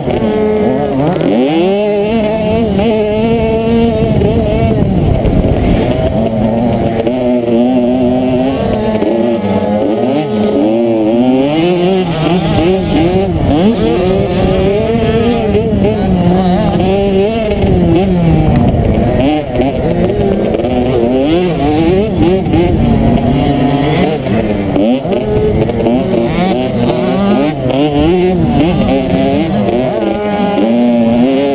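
Small motocross dirt bike engine revving hard and continuously around a dirt track, its pitch climbing and falling over and over with throttle and gear changes. Heard from the rider's helmet, with other small bikes racing close by.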